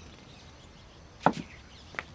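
Wooden dining chair knocking as it is pushed back: one sharp knock a little over a second in, then a lighter one near the end.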